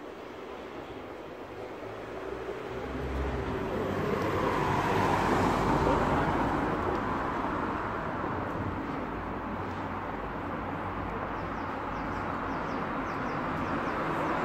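A car passing on the street: road noise swelling over a few seconds, loudest about halfway through, then fading, with another vehicle approaching near the end.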